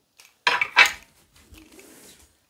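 Handling noise from doll parts being worked by hand: two quick, loud scraping rustles about half a second in, then faint scuffing.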